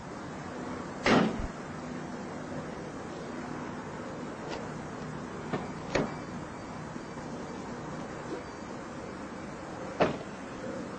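A single loud thump about a second in, then a few clicks as a car door is unlatched and opened, around five to six seconds in, over steady outdoor background noise.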